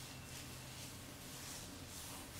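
Quiet room with a faint low hum that fades out about one and a half seconds in, and soft rustling of hands smoothing leave-in conditioner through hair.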